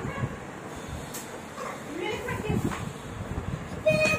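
Brief, indistinct voice sounds in a room, with a sharp click about a second in.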